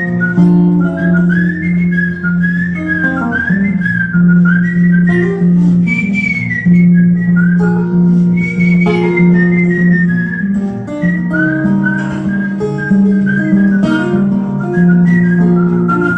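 A man whistling a sliding blues melody into a microphone, over steady acoustic guitar accompaniment.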